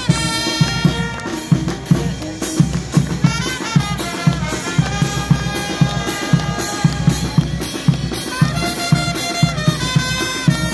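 Police brass band playing a huayno live: brass carrying the melody in long held notes over a steady bass drum and snare beat of about two strokes a second.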